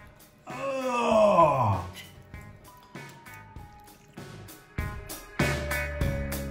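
A man's long, drawn-out groan of delight at the tender meat, falling in pitch, from about half a second to two seconds in. Background music with guitar and drums comes in louder near the end.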